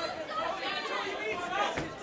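Spectators' overlapping chatter and calls around a boxing ring, many voices at once in a large room.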